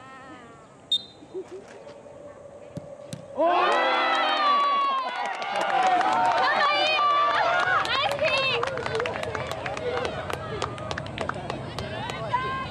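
A short, high whistle blast, then a ball struck about three seconds in. Straight after, a sudden loud burst of many children's voices shouting and cheering at the penalty kick, with clapping through the second half.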